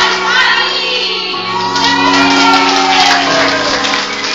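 A group of young women singing and shouting together over music with long held low notes.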